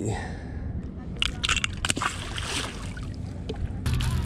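Handling noise as fishing gear is picked up on a boat: a few sharp clicks and a short rustle, over a low steady rumble of wind and water against the hull.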